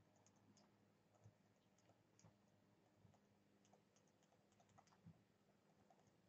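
Near silence with faint, scattered clicks and a few soft taps of a stylus writing on a tablet.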